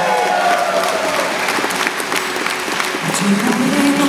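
Concert audience applauding during a live song, the singer's gliding vocal phrase fading out in the first second. About three seconds in, a held note comes in as the song carries on.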